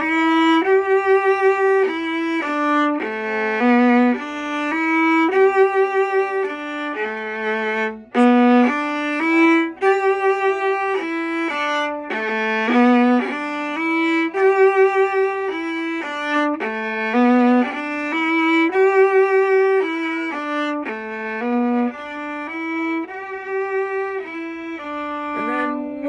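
Solo viola playing a bowed melody of separate held notes, broken every few seconds by short runs of quick repeated notes.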